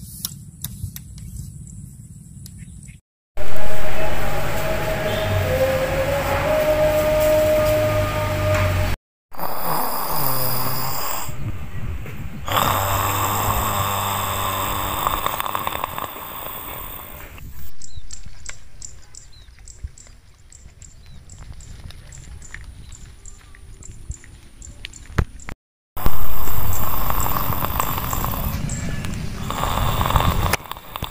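A man snoring in his sleep, heard across several short edited clips with brief silent breaks between them.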